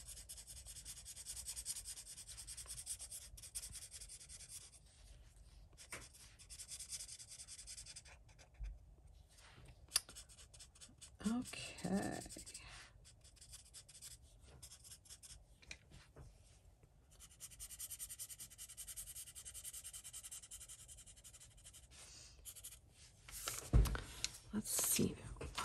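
Alcohol blender marker tip scrubbing over Inktense pencil on coloring-book paper to activate the color, a scratchy rubbing that comes in spells with quieter pauses. A single knock near the end.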